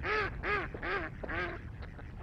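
A waterfowl calling four times in quick succession, each call a short note that rises then falls in pitch.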